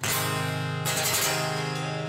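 The song's closing chord on guitar: two hard strums, the second just under a second in, then the chord left ringing and slowly fading.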